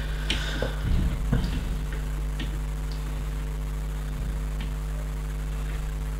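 Small plastic clicks of Lego bricks being handled and pressed onto the model: a handful in the first couple of seconds and one more later. A steady electrical mains hum runs underneath.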